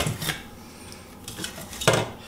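Handling noise from a hair dryer being taken apart: light clicks and knocks of its hard plastic housing and internal parts. There is one sharper click near the end.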